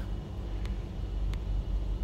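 Steady low rumble with two faint ticks less than a second apart.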